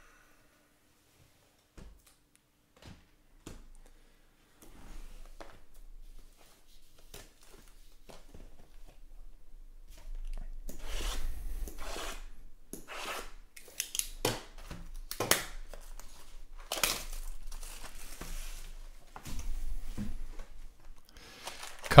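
Cardboard trading-card hobby boxes being unwrapped and opened by hand: a few soft clicks, then rustling that grows louder about halfway through, with sharp tearing and crinkling of wrap and card stock.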